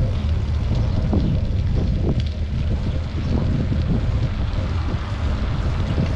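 Steady wind noise buffeting the microphone of a camera carried on a moving bicycle, a loud low rumble.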